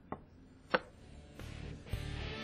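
Two sharp knocks a little over half a second apart, with music coming in and building toward the end.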